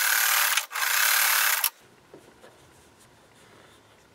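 Electric sewing machine running in two short bursts with a brief stop between them, stitching a fabric strip onto a small crumb quilt block, then stopping about two seconds in.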